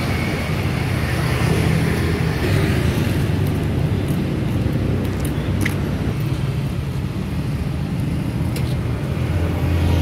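Street traffic: a steady low rumble of passing motorbikes and cars, with a few faint ticks along the way.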